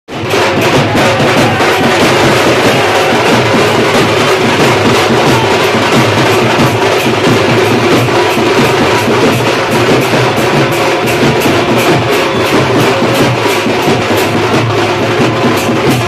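Loud, steady drumming with a fast, regular beat, carrying on without a break as music for a street procession.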